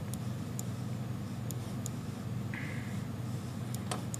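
Steady low electrical hum with several faint computer mouse clicks, two of them close together near the end, as a map is zoomed in.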